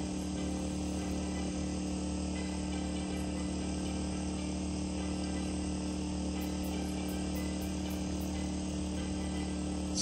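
Steady hum of a portable generator running, with night insects chirping faintly in high, repeated pulses over it.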